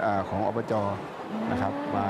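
Speech only: a man talking in Thai.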